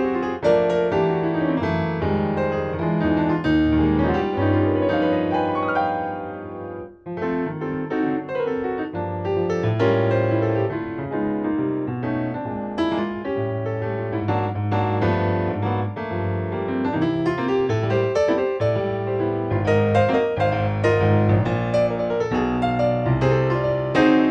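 Ravenscroft 275 virtual piano, a sampled grand piano played from a keyboard controller. It plays a continuous two-handed passage of full chords over strong bass notes, with a brief break about seven seconds in.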